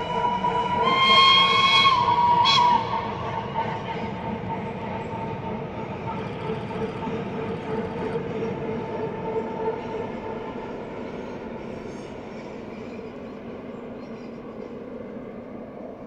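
Swiss Crocodile electric locomotive sounding a whistle for about two seconds, starting about a second in, as it hauls a train of coaches. Its wheels rumble steadily on the rails, fading slowly as the train crosses the viaduct.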